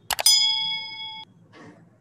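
Two quick clicks followed by a bright bell ding that rings for about a second and cuts off suddenly: the stock click-and-bell sound effect of an animated subscribe button.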